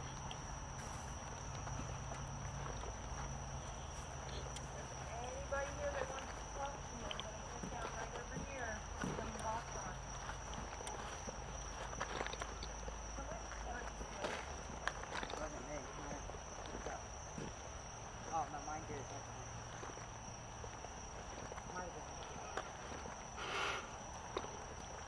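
A steady, high-pitched chorus of crickets at night, with footsteps and faint, indistinct voices.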